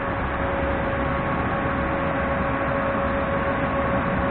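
Metro train standing at a station platform with its onboard equipment running: a steady hum and rumble with a thin steady whine on top.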